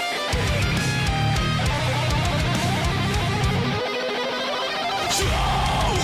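Death metal song playing: fast electric guitar riffing over heavy bass and drums. About four seconds in, the low end drops out for a moment, leaving the guitar alone. The full band comes back with a crash near the end.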